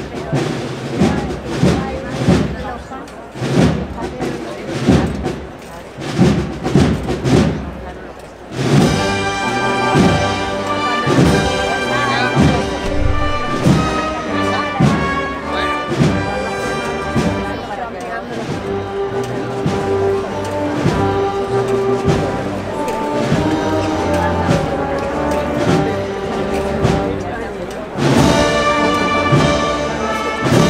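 Procession band behind a Semana Santa palio: drums alone beat a steady march for about eight seconds, then the full band comes in with brass playing a slow procession march over the drumbeat, swelling louder near the end.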